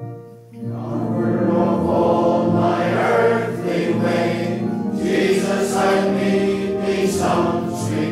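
A church congregation singing a hymn together in sustained, drawn-out notes. There is a brief breath-pause about half a second in before the next line begins.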